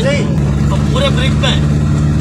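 Steady engine and road drone inside the cabin of a moving van, with a low hum that firms up about half a second in. Short bits of a man's voice come over it near the start and about a second in.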